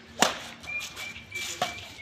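Badminton racket striking a shuttlecock in an overhead smash: one sharp crack about a quarter second in, then a fainter crack of the shuttle being hit back near the end.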